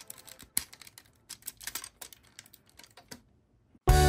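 Plastic parts of an Iron Knights Raiden transforming robot toy clicking as they are folded and snapped into place by hand: a scatter of light, irregular clicks, one sharper click about half a second in. Music starts abruptly just before the end.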